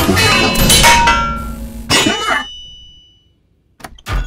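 Cartoon soundtrack of music and metallic clatter: a run of hits with ringing tones, a last strong hit about two seconds in, then a fade to near silence for about a second before a short knock near the end.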